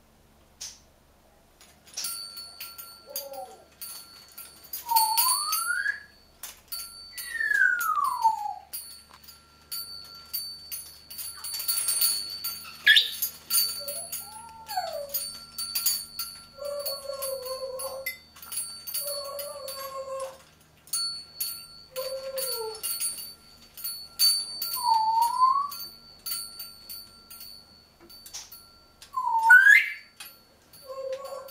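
Congo African grey parrot whistling a series of gliding whistles, some rising, some falling, some two-note, over a run of metallic clicking and jangling from the metal spoons on a hanging toy it is playing with.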